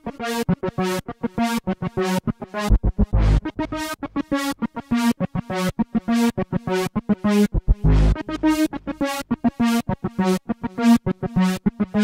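Korg KingKORG analogue-modelling synthesizer playing a fast riff of short staccato notes, about four a second, with a few deeper bass notes among them. The filter envelope opens on each note and closes again, giving a squelchy sound.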